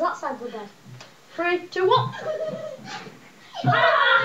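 A young child's voice: wordless calls and laughter.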